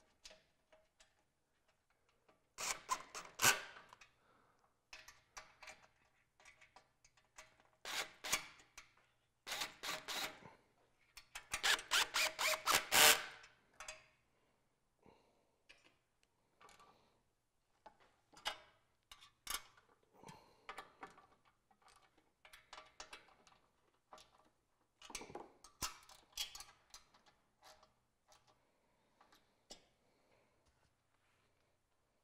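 Hand tools working steel bolts on an oil cooler bracket: scattered metallic clicks and clinks, with short runs of rapid even clicking, the loudest about halfway through.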